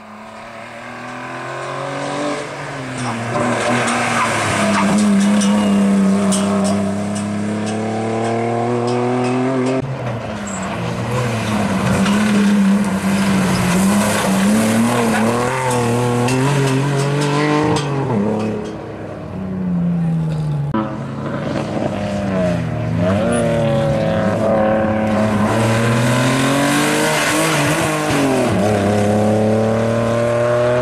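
BMW E36 engine revving hard, its pitch climbing and dropping repeatedly as the car is driven sideways, with tyres squealing and skidding. It grows louder over the first few seconds as the car approaches.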